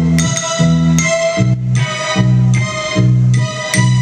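Live band playing an instrumental passage of a 1960s-style girl-group pop song: repeated organ-like keyboard chords over bass, with guitar and drums.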